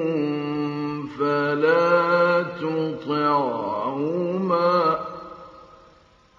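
Male Quran reciter chanting in the ornamented mujawwad style: one long melismatic phrase of held notes that bend and waver in pitch, ending about five seconds in and fading away.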